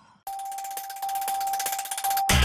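Electronic TV channel ident jingle: one held, bell-like tone over a fast, even shimmer, starting about a quarter second in.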